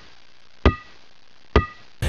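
Two sharp clacks about a second apart, each with a short ringing tone: chess pieces set down hard on a board.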